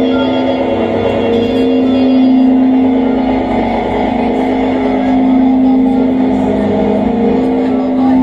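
Live experimental electronic music: a loud, sustained drone held on one low pitch with layered overtones and hiss over it, played on tabletop electronics.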